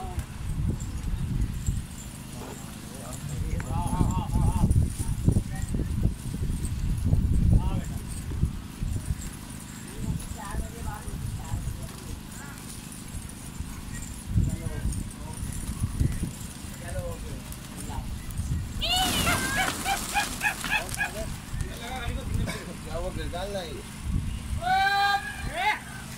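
A large flock of domestic pigeons flapping as they take off from and settle on a rooftop, in irregular rough surges. Late on, a man gives a quick run of loud, arching calls to the birds.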